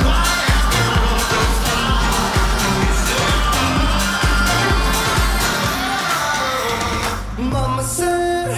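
Future house electronic dance music from a DJ set: a steady four-on-the-floor kick drum at about two beats a second under layered synths. About five and a half seconds in the kick drops out and the track thins into a breakdown of sustained notes.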